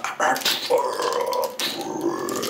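A man's voice making rough growling noises for a toy fight, with one drawn-out growl of about a second in the middle.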